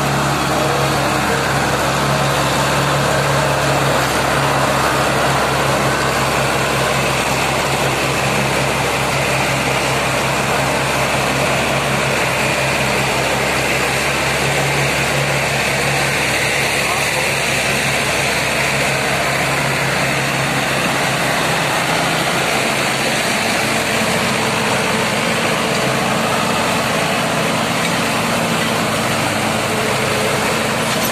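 Diesel engines of two Mahindra tractors running hard under load: one tractor is towing the other, which is pulling a heavily loaded trolley through deep mud. The sound is loud and continuous, and the deep engine note fades about three-quarters of the way through.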